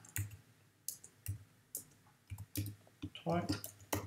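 Computer keyboard keystrokes typing a folder name: about six separate clicks at uneven intervals.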